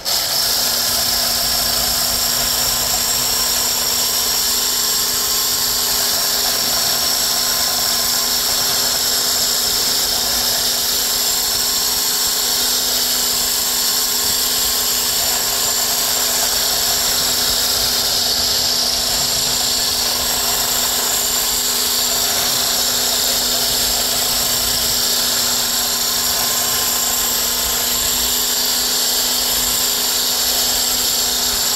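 Electric hand blender with a whisk attachment running steadily, whisking pancake batter in a plastic bowl: a constant motor whine that holds one pitch throughout.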